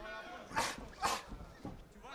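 Two short, sharp vocal bursts about half a second apart, over faint background voices.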